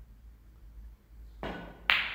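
A snooker shot: a softer knock as the cue strikes the cue ball about one and a half seconds in, then a sharp click, the loudest sound, as the cue ball hits the red near the end.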